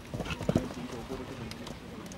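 Hoofbeats of a show-jumping horse landing after clearing a fence and cantering away on grass: a few heavy thuds about half a second in, then lighter footfalls.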